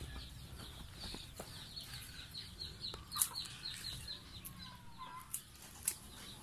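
Faint backyard chickens: a run of short, high, falling peeps, several a second, with a brief gliding call near the end. Two sharp clicks stand out, about three seconds in and just before the end.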